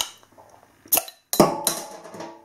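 A bottle opener prising the crown cap off a glass beer bottle: a sharp metallic click at the start and another about a second in as the cap comes free, followed by a brief pitched, ringing sound.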